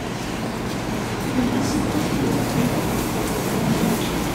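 Steady, noisy din of a live audience, with no words picked out, as laughter carries on.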